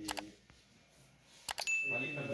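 Subscribe-button overlay sound effect: two quick mouse clicks about one and a half seconds in, then a single high bell ding that rings on.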